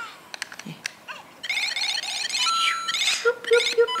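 Lego Super Mario interactive figure playing electronic game sound effects from its built-in speaker: a few plastic clicks as it is handled, then a bright run of chirping beeps, and near the end a steady beeping about four times a second.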